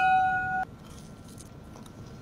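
A steady electronic tone with overtones, flat in pitch, that cuts off abruptly about two-thirds of a second in. Quiet room tone follows.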